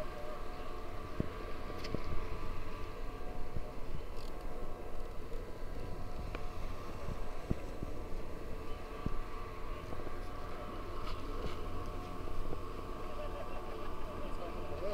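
Outdoor ambience: a steady low rumble of wind on the microphone under a constant mechanical hum, with a few faint clicks and distant voices.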